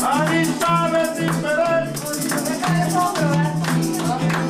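Live coplas folk music: a voice singing a melody over plucked guitar, kept in time by a steady beat of handclaps and rattles.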